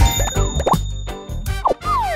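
Cartoon background music with comic sound effects: a sharp hit at the start, a high ringing tone held for about a second, quick upward pitch sweeps, and a falling slide near the end.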